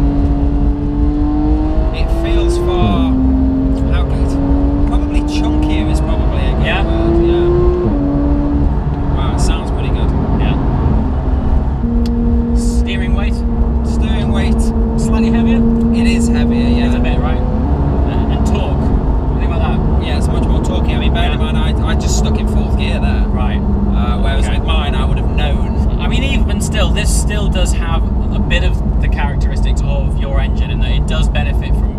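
Porsche 991 GT3 naturally aspirated flat-six with an upgraded exhaust, revved hard under acceleration: its note climbs through the revs and drops sharply at quick upshifts, twice in the first eight seconds, then holds a steadier note before another shift.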